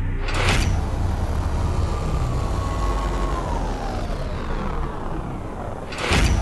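Sound effects for a TV show's animated opening titles: a whoosh about half a second in over a deep, steady rumble, with a tone that slowly falls in pitch midway through.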